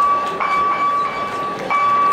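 A steady high-pitched tone that holds one pitch and breaks off briefly a few times, over the hubbub of the venue.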